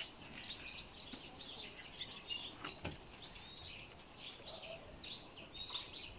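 Small birds chirping in short, repeated calls over a steady high insect drone, with one sharp click about halfway through.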